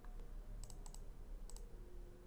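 A few faint computer mouse-button clicks: a quick run of three or four a little after half a second in, and another click near one and a half seconds.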